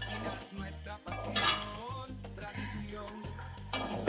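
A metal spoon stirring and scraping fried rice around a metal pan, over background music with a steady bass line.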